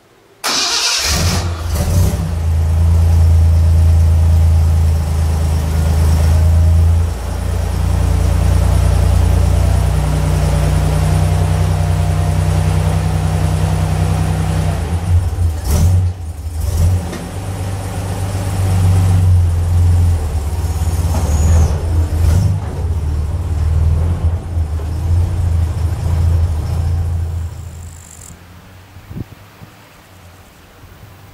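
Ford Capri engine cranked and started about half a second in, then running at idle with a few brief rises in level. The engine sound falls away near the end.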